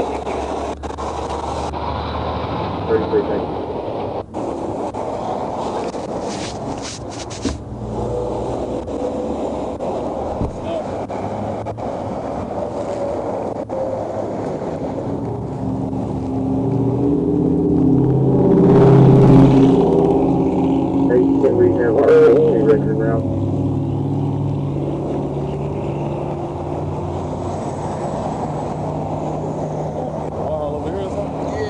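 Steady roadside traffic noise with indistinct, muffled voices. A vehicle passes about two-thirds of the way through, its sound swelling and then fading over several seconds.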